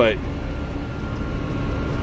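Loader tractor's engine running steadily, heard from inside the cab as it drives, with a faint steady high whine over the hum.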